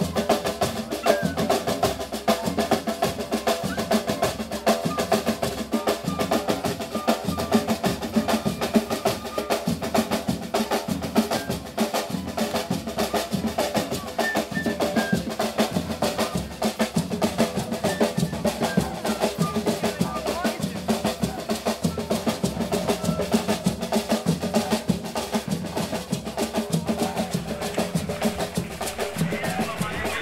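Several hand drums, a djembe among them, played together in a fast, steady rhythm of dense strokes.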